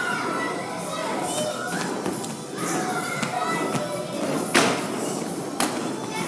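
Children's voices and play sounds in a large, echoing gymnasium, with two sharp thuds about a second apart near the end.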